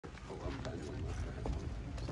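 Footsteps of a group walking over a dirt yard, a scattering of irregular clicks over a low rumble, with faint voices.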